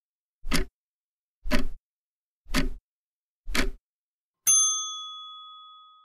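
Countdown timer sound effect: four clock ticks about a second apart, then a bell ding that rings out and fades, signalling that the time to answer is up.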